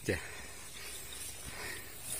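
Faint rustling of tall grass and soft footsteps as hikers climb a steep, overgrown slope on foot, the grass brushing against legs.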